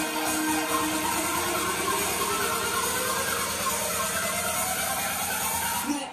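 Background music building up, with several layered tones sweeping steadily upward in pitch throughout, breaking off at the very end.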